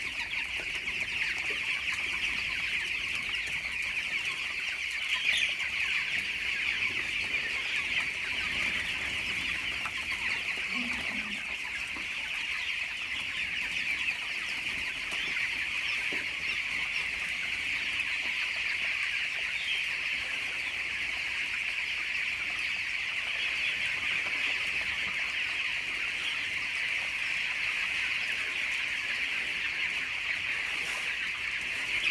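A large flock of 18-day-old broiler chicks peeping continuously, a dense, steady chorus of high-pitched calls.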